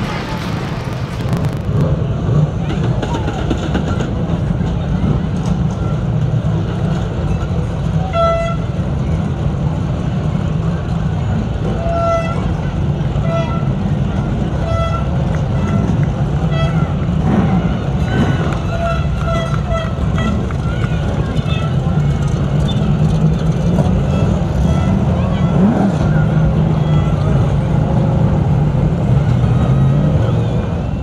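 Vehicle horns tooting in many short beeps through the middle stretch, over a steady engine rumble and voices.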